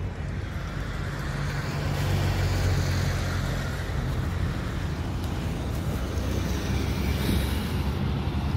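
Steady road and wind noise from riding a bicycle along a city street, with low wind rumble on the microphone and the even noise of traffic around it.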